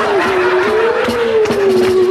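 A single held tone on a 1960s novelty pop record, drifting slowly up and down in pitch, between two sung parody verses.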